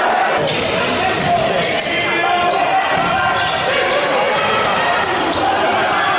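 Live futsal play in a sports hall: the ball struck and bouncing on the wooden court in a few sharp knocks, over a steady bed of voices from players and spectators, all with the hall's echo.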